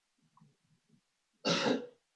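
A person clearing their throat once, short and sharp, about one and a half seconds in, after faint low murmuring.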